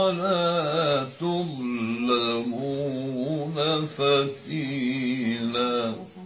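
An elderly man's voice reciting the Quran in the melodic tajweed style. He draws out long, ornamented notes whose pitch wavers and glides, in several phrases with brief breaths between them. The recitation stops at the very end.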